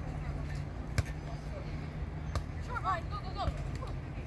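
Beach volleyball rally: sharp slaps of hands on the ball, one about a second in and another a little past two seconds, over a steady low outdoor rumble.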